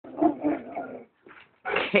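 Dog barking several times in quick succession, then again near the end.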